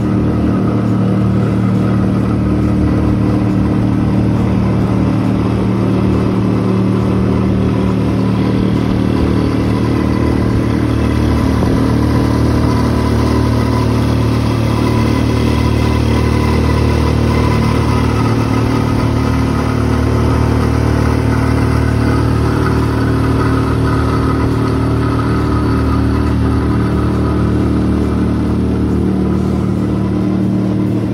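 A boat's outboard motor running steadily at cruising speed, with water rushing along the hull as the boat moves.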